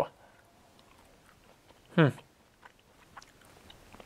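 Faint mouth clicks of someone chewing a piece of honeybee honeycomb, starting after a hummed "hmm" about halfway through.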